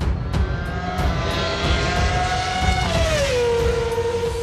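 Logo-sting theme music over a deep rumble. A held tone slides down in pitch about three seconds in and settles lower.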